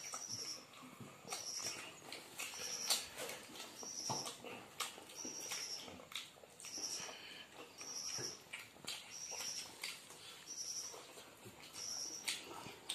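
Close-up eating sounds: wet chewing and lip-smacking, with soft clicks from fingers mixing rice and curry on a banana leaf. A short high chirp repeats evenly, a little more than once a second, behind the eating.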